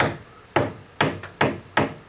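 Hammer blows on wooden column formwork: five sharp strikes at about two a second, each ringing briefly.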